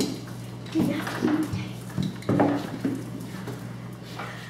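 Metal clinking of a belay device and carabiner as the rope is pulled through to take in slack for a climber, in several short rattles over a steady low hum.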